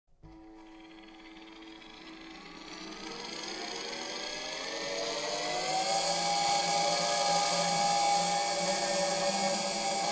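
Electronic music: a dense drone of many held tones, several gliding slowly upward in pitch, swelling steadily louder.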